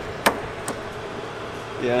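Large pliers clamped on a Jeep's steering linkage joint give a sharp metallic click about a quarter second in, then a fainter one, as the mechanic levers it to check for play at the steering box; the check finds the joint shot.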